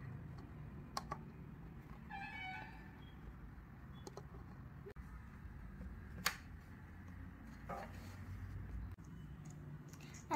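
Faint handling of a plastic funnel and a clear plastic tube as the funnel's nozzle is pushed into the tube: scattered clicks and taps, the sharpest about a second in and about six seconds in, with a short high tone about two seconds in.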